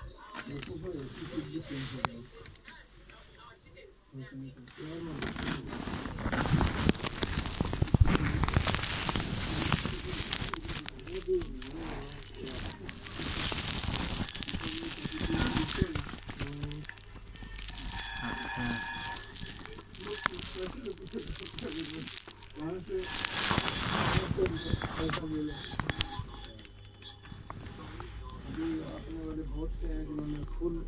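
Rustling and crinkling handling noise right against the microphone, rising and falling in long swells, with indistinct muffled voices underneath. A brief tonal sound comes a little past halfway.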